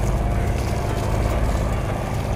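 A boat engine running steadily, a low even rumble with a fine regular pulse, as the boat motors along.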